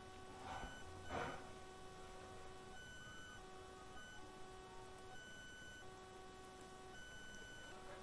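Near silence: faint room tone with a thin electrical hum of a few steady tones that cut in and out every second or so.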